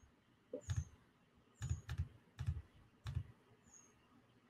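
Faint computer clicks and key taps, about six separate soft knocks spaced unevenly, as clips are closed and opened on a computer.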